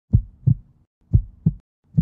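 A heartbeat sound effect: low double thumps, about one beat a second, two full beats and the start of a third.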